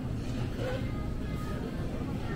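Supermarket ambience: in-store background music over a steady low hum, with faint distant voices.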